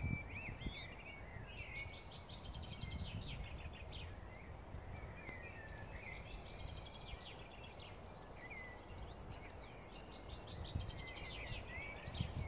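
Small songbirds singing: chirps and fast trilled phrases that come in three bouts, over a low rumble that swells and fades.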